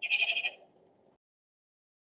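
A short vocal sound from a person, lasting about half a second and then fading.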